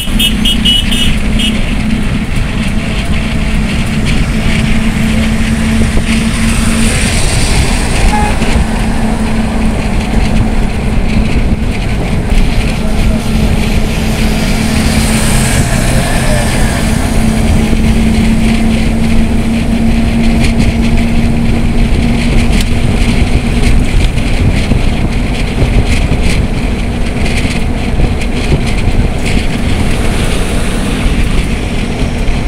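Wind rushing over the microphone and road rumble from a moving vehicle, with a steady engine hum underneath. A brief pulsed high tone sounds in the first second.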